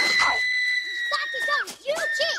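A woman's long, high-pitched scream from a film soundtrack, held at one steady pitch for about a second and a half before breaking off near the end, with other film voices and sound around it.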